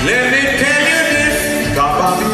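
Male voices singing a calypso into stage microphones over live band accompaniment, the melody swooping upward at the start.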